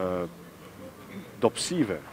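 A man speaking in Albanian: a drawn-out vowel that ends just after the start, a short pause, then a brief syllable with a hiss near the end.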